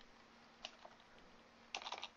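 A few faint computer keyboard keystrokes: two single taps around the middle and a quick cluster near the end, as a line of code is finished and a new line is started.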